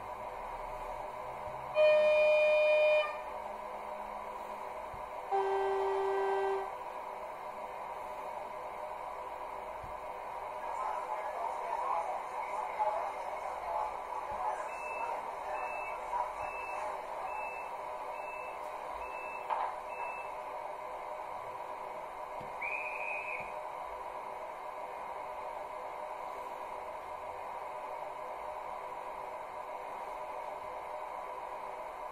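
Digital sound decoder (ESU Loksound 5) in a Märklin H0 ICE model playing recorded train sounds through its small loudspeaker: a high horn blast of about a second, then a lower horn blast. Then comes a stretch of rustling door noise with about seven warning beeps roughly a second apart, and a short conductor's whistle near the end.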